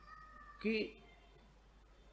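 A man's voice saying one short word about half a second in, against faint room tone.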